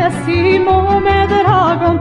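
A 1968 Yugoslav song recording playing: a melody line with wide vibrato over a steady, rhythmic bass accompaniment.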